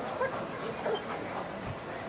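A dog giving two short, high yelps, about a quarter second and a second in.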